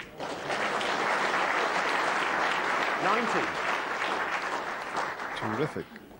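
A sharp click of snooker balls meeting, then an arena audience applauding a potted red, with one voice calling out in the middle. The clapping fades near the end.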